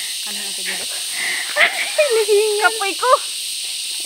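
People talking over a steady high-pitched hiss that runs underneath throughout.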